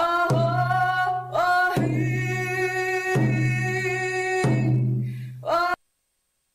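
Traditional Coast Salish drum welcome song: a woman singing over slow, evenly spaced drum strokes about one and a half seconds apart, each stroke leaving a low ringing boom. The song cuts off suddenly near the end.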